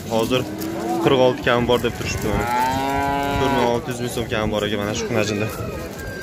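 A calf mooing: one long call about two seconds in that rises and then falls in pitch, lasting about a second and a half.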